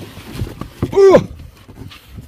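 A single loud, short animal call about a second in, rising then falling in pitch.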